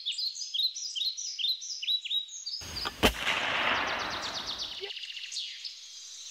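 A bird repeating a quick, descending high chirp, about three calls a second. Around two and a half seconds in, a rush of noise rises to a single sharp crack, the loudest sound, then fades over about two seconds.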